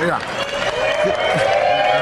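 Men's voices speaking in short bits, with a long, nearly level tone held underneath that rises slightly.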